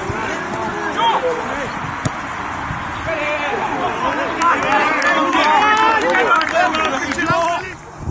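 Men shouting and calling to each other across an outdoor football pitch over a steady outdoor noise, with a few sharp knocks. The voices are loudest and most frequent in the second half of the clip, and the sound drops away abruptly near the end.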